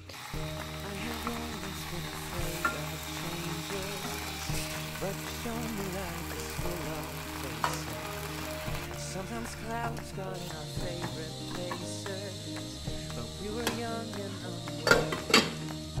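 Reheated pasta soup sizzling steadily in a small nonstick saucepan on the stove while a spoon stirs it. A few sharp clicks of the spoon against the pan come near the end.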